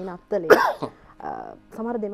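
A person clears their throat with a sharp, loud cough-like burst about half a second in, followed by a shorter, quieter rasp, between stretches of a woman's speech.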